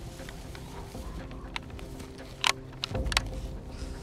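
Handling noises: a few sharp clicks and rustles as a scoped hunting rifle is handled and someone moves in dry grass, the loudest click about two and a half seconds in and a low thump just after.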